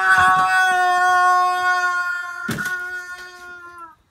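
Rubber chicken squawking in one long held note that fades and dips slightly in pitch near the end, with a sharp knock about two and a half seconds in.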